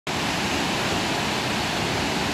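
Sea surf breaking and rushing onto the beach: a steady, even roar of water.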